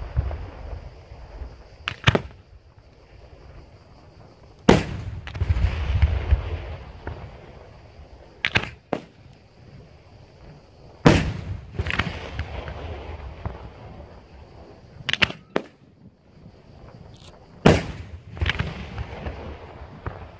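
Daytime fireworks shells bursting in the sky: about ten sharp bangs at irregular intervals, several followed by a long rolling rumble of echo.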